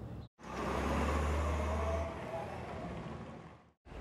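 A motor vehicle running, with a deep steady hum that drops away about halfway through. The sound starts and stops abruptly between brief silences.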